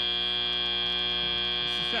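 Arena end-of-match buzzer of a FIRST Robotics Competition match: one loud, steady electronic buzz, the signal that the match clock has hit zero and play is over.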